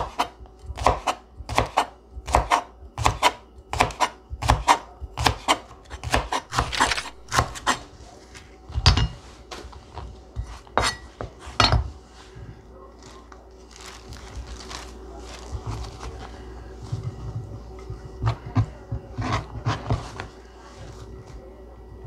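Kitchen knife slicing a leek into rounds on a plastic cutting board, a steady run of sharp chops about two to three a second, then a few single louder strikes. After about twelve seconds the chopping stops and only soft rustling and tapping remain as the cut leek is scooped up by hand.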